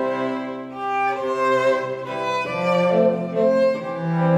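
String quartet of two violins, viola and cello playing a tango with bowed, sustained notes, several lines sounding together and moving from note to note.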